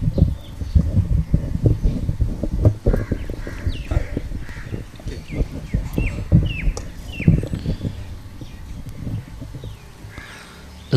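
Microphone being handled on its stand, giving irregular knocks and rumbles through the sound system. Birds call in the background with short, falling chirps, mostly in the middle seconds.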